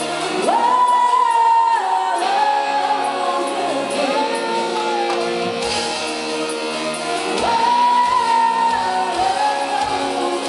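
Live pop band playing, with a female lead voice singing long high held notes twice over keyboard chords, and a low drum beat in the second half.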